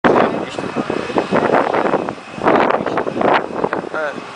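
Indistinct talk from people close to the microphone, with a faint steady high whine underneath.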